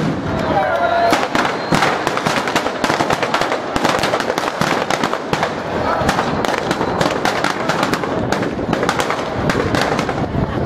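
Firecrackers packed into a New Year's effigy going off in a rapid, irregular, continuous crackle of sharp bangs.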